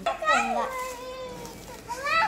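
Young children's voices: a short cry, then one long drawn-out call that slowly falls in pitch.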